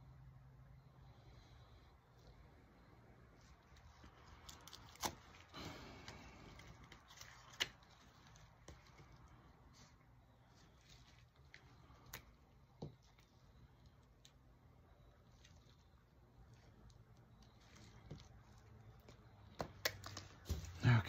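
Near silence: a steady low hum with a few light, sharp clicks and taps as silicone molds and small tools are handled, the loudest about five seconds in and another near eight seconds.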